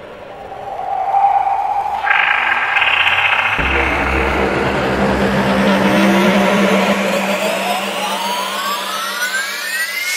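Electronic dance track intro building up: synth layers come in about two seconds in, with a deep bass layer joining soon after. Through the second half, several tones sweep steadily upward in a rising build.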